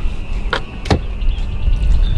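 Wind buffeting the microphone in a steady low rumble, with two short knocks about half a second and one second in.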